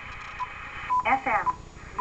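Short key beeps from an Icom IC-7000 transceiver as its mode button is pressed to step the mode from AM to upper sideband: three brief single-pitch beeps about half a second apart.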